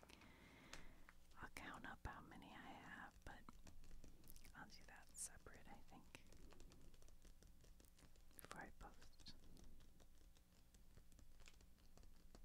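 Faint whispering in short stretches, with small soft clicks and taps scattered throughout.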